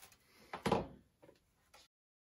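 A short sliding rasp as the twisted-pair wires are pulled out of an Ethernet cable's slit plastic jacket, followed by a couple of light clicks. The sound cuts off suddenly just before the end.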